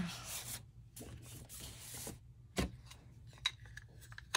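Ink pad rubbed and scraped across a plastic craft mat to lay down ink for splattering, loudest at the start, with two light clicks in the second half.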